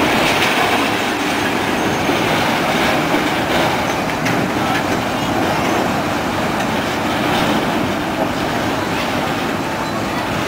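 Steel wheels of a rail-mounted gantry rolling on track: a loud, steady rumble and rattle of metal on rail, with a few faint clicks.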